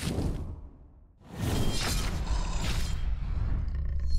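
Animated-intro sound effects: a lighter's flame flaring up at the start and fading within half a second, then, from about a second and a half in, a deep rumble with several sharp hits as the logo comes in.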